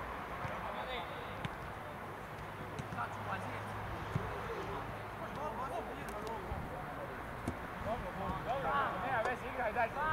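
Open-air football pitch ambience: distant, indistinct voices of players and onlookers calling out over a steady background murmur. The shouts grow louder near the end.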